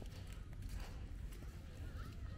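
Footsteps walking along a leaf-strewn paved path, with a low rumble of wind on the microphone.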